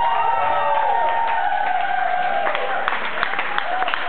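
A drawn-out cheer from the crowd, then hand clapping from the guests starting about halfway through, with many separate sharp claps.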